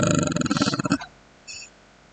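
A man's drawn-out hesitation "uhh", trailing off in a creaky voice for about a second. Then a brief faint click.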